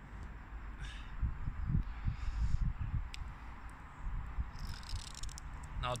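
Wind buffeting the microphone in uneven low rumbling gusts over a faint steady hiss, with a few faint ticks.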